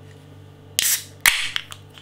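Aluminium beer can's ring-pull tab being cracked open: two sharp clicks about half a second apart, the second trailing off in a short hiss.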